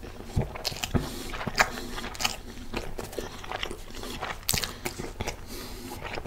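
Close-up chewing of a turkey burger with cheese in a soft bun: irregular short mouth clicks and smacks, a few of them louder.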